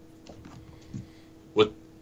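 Quiet room tone with a faint steady hum and a few faint ticks, then a man says a short 'What' near the end.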